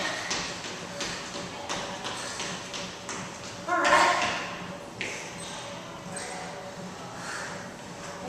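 Sneakers landing on a hardwood floor as a woman jogs and steps in place, a scatter of light thuds and taps. A short burst of her voice comes about four seconds in.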